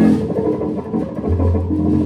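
Small group playing live improvised music: drum kit and electric guitars, with a low held bass note coming in a little over a second in.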